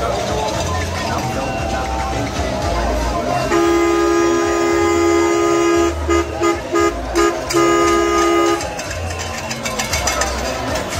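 Vehicle horn honking in celebration: one long blast of about two and a half seconds, five quick toots, then another held blast of about a second. Loud background music with a thumping beat and voices runs underneath.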